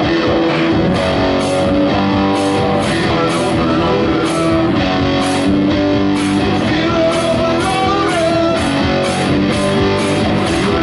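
Live rock band playing an instrumental passage: electric guitars holding sustained notes over bass and drums, with cymbals keeping a steady beat.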